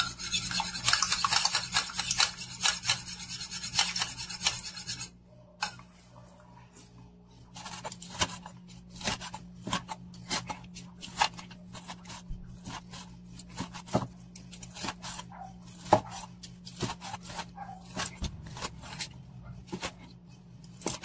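A utensil briskly stirring soy sauce and olive oil dressing in a ceramic bowl, a fast scraping for about five seconds. After a short pause, a kitchen knife slices cooked pork on a wooden cutting board, a long run of sharp knocks as the blade meets the board, over a low steady hum.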